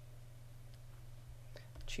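Quiet room tone with a steady low hum, and a couple of faint clicks.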